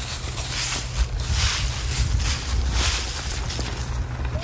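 Dry autumn leaves rustling and crunching as they are kicked and walked through, in repeated noisy swishes over a steady low rumble.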